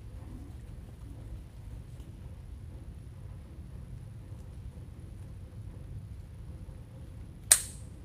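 A single sharp snip of scissors cutting through a ribbon tail near the end, over a faint steady room hum.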